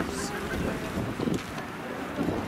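Wind buffeting the microphone, with indistinct voices in the background.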